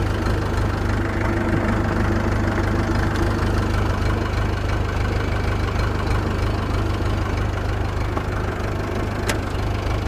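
Massey Ferguson 261 tractor's diesel engine running steadily under way, with one sharp click near the end.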